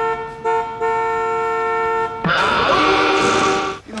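A car horn blown in long steady blasts, with a short break just under half a second in, cutting off a little after two seconds. A loud noisy burst follows for about a second and a half.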